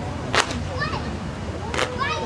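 Large folding fans snapped open, two sharp cracks about a second and a half apart, over audience cheering and shouts.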